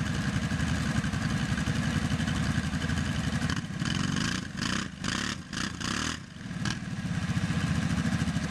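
Two ATV engines running hard under load in a tug of war: a Yamaha Grizzly 700's single-cylinder and a Kawasaki Brute Force 750's V-twin straining against a tow strap. About midway the engine sound falls off and picks up again several times, then it steadies back to a full pull.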